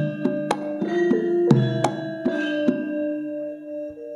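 Javanese gamelan music: struck metal keys ringing over a hand drum. The strikes stop near three seconds in and the ringing tones die away slowly.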